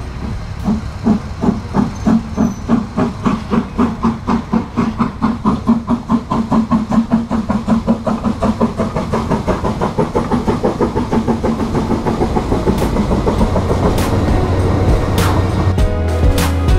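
Narrow-gauge steam locomotive pulling away with its train, its exhaust beats quickening from about two to four or five a second before merging into a steadier rumble after about ten seconds.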